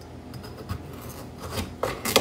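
A sharp kitchen knife sawing through a raw butternut squash, the blade rasping through the dense flesh, with a knock near the end as it comes through onto the cutting board.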